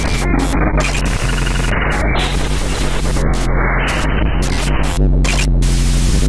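Experimental noise music: harsh crackling static, chopped into abrupt chunks that cut in and out several times a second, over a steady deep hum.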